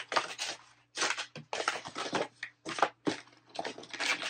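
Packing paper crinkling and rustling in irregular bursts as hands dig through a subscription box.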